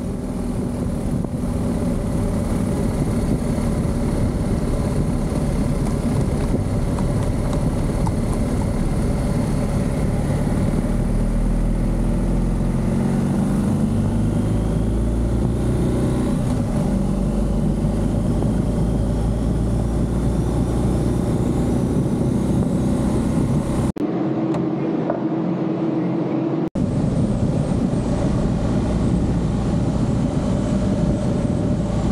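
Motorcycle riding at steady speed: a constant low engine rumble under wind and road noise. About 24 seconds in, the low rumble drops away for a couple of seconds, then returns.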